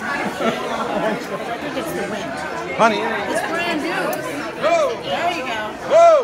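Party guests chattering at once, several voices overlapping, with a few louder voices rising above the babble, one about halfway through and one at the end.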